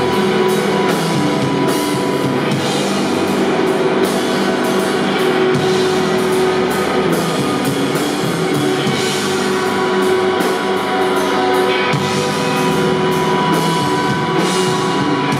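Live rock band playing loud: distorted electric guitars holding sustained notes over bass and a drum kit, with frequent cymbal and drum strikes.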